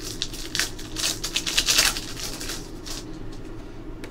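Stack of 2015-16 Panini Excalibur basketball trading cards being flipped and slid against one another by hand: a dry rustle of card stock, busiest in the first two seconds and thinning out after.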